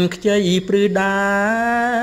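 A voice singing verse in long, wavering notes, with short broken phrases at first and then one long held note through the second half.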